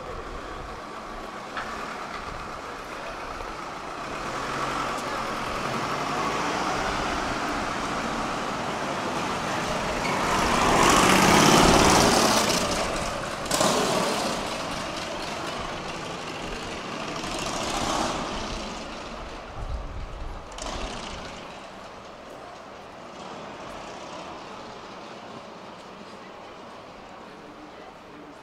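Street traffic on a city shopping street. A vehicle passes close, swelling to its loudest about eleven seconds in and then fading, and a few smaller passes follow.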